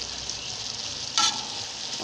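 Potato, pea and tomato masala sizzling in a metal pot as a metal spoon stirs it, with one brief sharper scrape a little over a second in.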